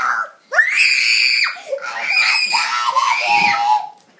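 A child screaming: a high-pitched shriek that starts about half a second in and is held for about a second, followed by more shrieking and shouting.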